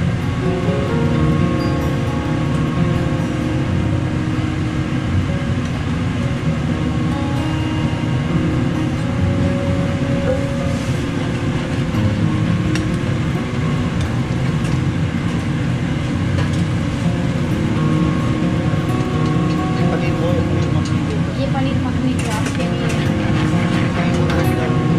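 A steady, loud mechanical roar with music playing over it. A few light metal clinks come near the end as a ladle works the curry pans.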